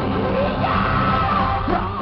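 Live pirate metal band playing loud: drums, distorted guitars and keytar, with a yelled vocal held over it from about half a second in, recorded from the crowd with a small camera's microphone.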